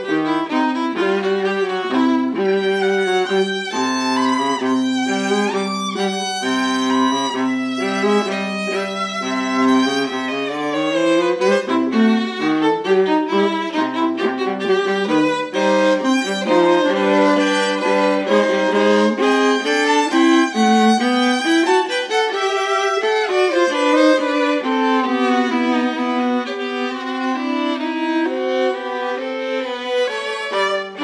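Violin and viola playing a duet together, two bowed lines moving in steady notes, with stretches of double stops in both parts.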